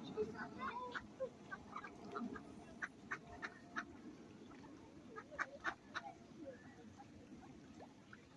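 A flock of mallards giving many short quacks and calls, scattered irregularly, the loudest a little after three and five seconds in.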